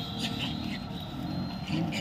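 A motor vehicle engine running close by, with indistinct voices and a few short high chirps over it.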